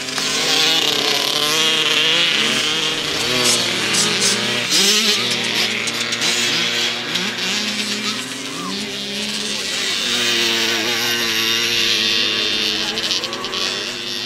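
Small two-stroke engines of 65 cc youth motocross bikes racing past, revving up and down with repeated rising sweeps in pitch as the riders accelerate out of the turns.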